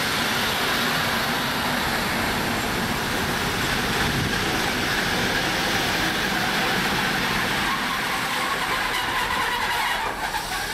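Electric passenger train running past close by along the platform: a steady, loud rolling noise of steel wheels on the rails, easing off slightly in the last two seconds.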